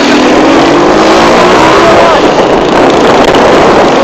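Small motorcycle engine speeding up, its pitch rising steadily over the first two seconds, under loud wind rush on the microphone of a moving motorcycle.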